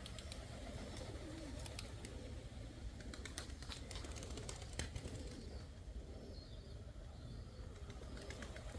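Faint cooing of domestic pigeons over a low steady background, with a few faint clicks scattered through.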